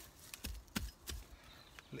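A small pronged hand weeding fork digging into sedum and roof substrate to pull out a thistle, giving a few short knocks and scrapes with rustling.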